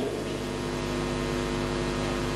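A steady, even hum made of several constant tones, with no change in pitch or level.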